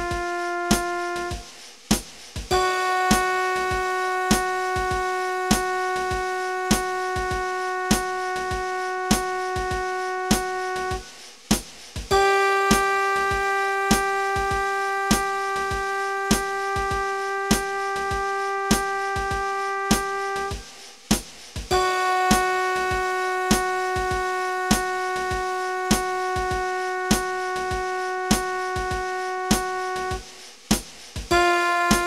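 Play-along long-tone track: a steady synthesized keyboard-like note is held for about eight and a half seconds, stops briefly, then the next long note begins, a little higher the second time, over a metronome clicking about one and a half times a second.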